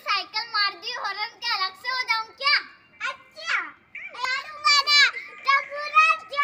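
Young children talking and laughing in high-pitched voices, in quick, closely spaced syllables.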